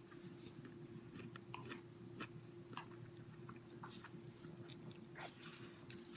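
A person chewing a mouthful of shrimp fried rice: faint, scattered small clicks of chewing over a steady low hum.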